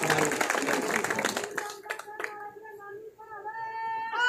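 Crowd clapping that thins out and stops a little past halfway. Faint sustained pitched tones follow, held with short breaks.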